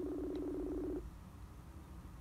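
Facebook Messenger outgoing-call ringback tone from a phone's speaker while the call is still ringing through: one steady tone lasting about a second, then it stops.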